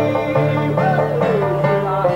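Banjo and acoustic guitar playing together live in a brisk picked folk rhythm, with one note sliding downward about a second in.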